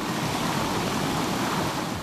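Small waterfall on a rocky river: a steady rush of water falling into a pool.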